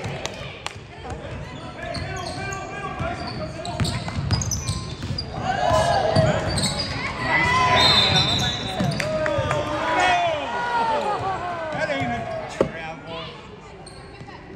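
Voices shouting and calling over basketball play in a gym, with a basketball bouncing on the hardwood floor. The shouting is loudest in the middle, and there is a single sharp knock near the end.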